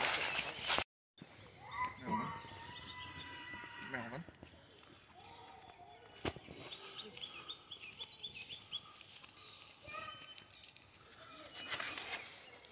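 Small songbirds chirping in a quick run of short, high calls, several a second, in the middle stretch. There is a burst of rushing noise on the microphone at the very start.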